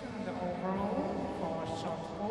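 A person's voice speaking, with no other clear sound beside it.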